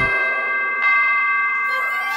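Clock bell striking two: two chimes a little under a second apart, each ringing on with a steady, bright tone.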